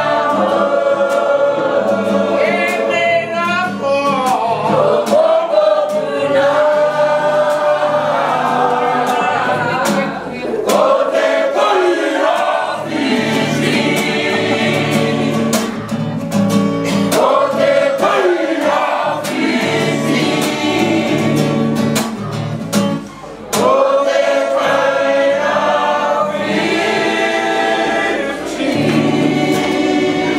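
A group of men and women singing together, with a strummed guitar underneath. The singing breaks off briefly between phrases about three-quarters of the way through.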